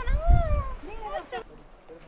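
Short voices, several brief calls that rise and fall in pitch, with a low rumble across the first half second.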